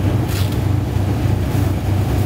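Steady low rumble of engine and road noise inside a moving tour bus, with a brief hiss about half a second in.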